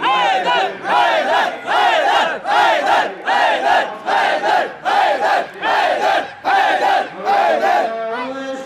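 A crowd of men chanting a short religious slogan in unison, led by a man shouting it through a microphone, in a fast steady rhythm of repeated shouted phrases.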